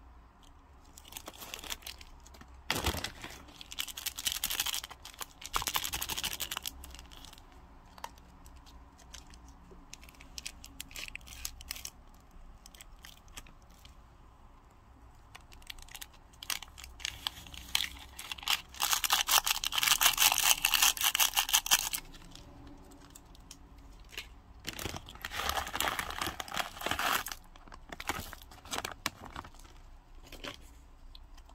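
Plastic instant-ramen packaging crinkling and a seasoning packet being torn open, in several rustling bursts, the loudest lasting a few seconds about two-thirds of the way through.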